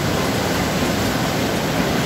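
Mudflow: a fast, muddy flood torrent rushing over the ground, heard as a loud, steady noise of rushing water.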